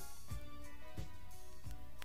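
Instrumental passage of a 1980s Soviet pop song played from a vinyl LP, with no singing: sustained band notes over a steady beat, a low drum stroke about every two-thirds of a second.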